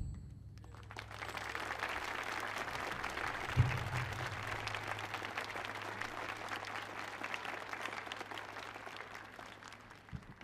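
Audience applauding, starting about a second in and fading toward the end, with a single low thump about three and a half seconds in.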